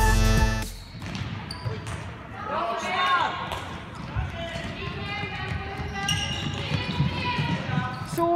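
Electronic intro music cuts off within the first second, then a handball match in a sports hall: the ball bouncing on the court floor and players' feet knocking on it, with voices calling out twice.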